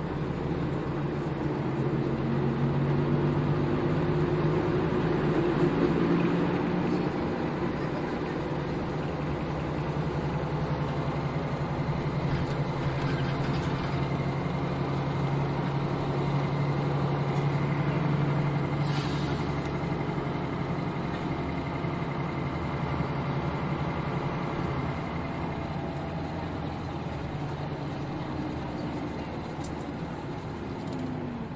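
Nissan Diesel KL-UA452KAN city bus under way, its diesel engine running steadily with small changes in pitch as it drives. About two-thirds of the way through there is a short hiss of air.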